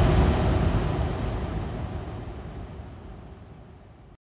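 The closing sound of a neurofunk drum and bass track dying away: a rough, noisy tail with a heavy low rumble that fades steadily to silence.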